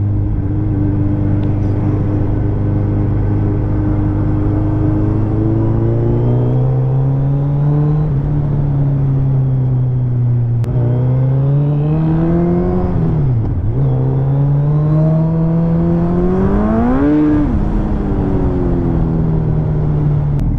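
Suzuki Hayabusa's inline-four engine running under a steady cruising throttle. Its pitch rises and falls with the throttle: it dips sharply about thirteen seconds in, climbs steeply to a peak around seventeen seconds, then drops back to a steady note.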